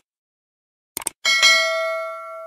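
Subscribe-button animation sound effects: a quick mouse click about a second in, followed at once by a notification bell ding that rings and slowly fades.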